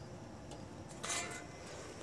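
Faint outdoor background noise, with a brief soft rustle about a second in.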